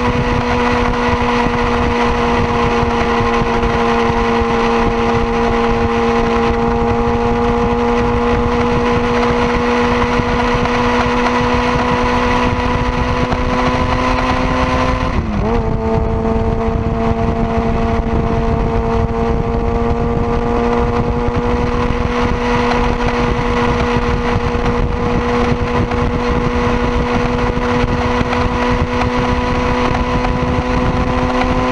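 Sport motorcycle engine heard from on board, holding a steady high note that climbs slowly under wind rush. About halfway through the pitch dips briefly and picks up again, as at a quick gear change.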